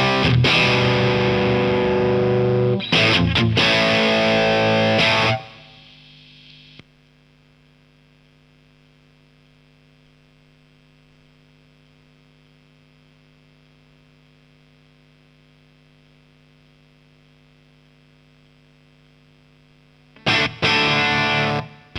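Distorted electric guitar, a Fender American Standard played through an overdrive pedal into a Marshall 1987X amplifier, ringing out sustained notes for about five seconds before dying away. After that only the amp's faint steady hum remains, with a small click about seven seconds in.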